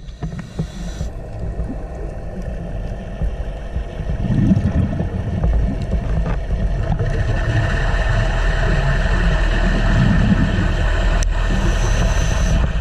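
Underwater recording's own sound, with no music: a steady low rumble and wash of water noise that grows louder about four seconds in.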